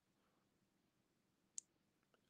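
Near silence: room tone, broken by one brief, faint, high click about one and a half seconds in.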